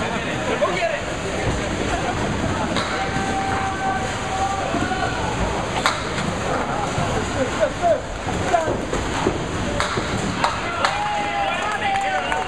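Candlepin bowling alley in play: balls rolling down wooden lanes and pins clattering, with many sharp knocks, more of them in the second half, over the steady chatter of players and onlookers.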